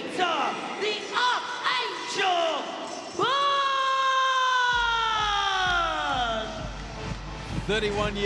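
An arena ring announcer's amplified voice calling a fighter's introduction: a few quick phrases, then one long drawn-out word held for about three seconds and sliding down in pitch. A low rumble comes in under the held word.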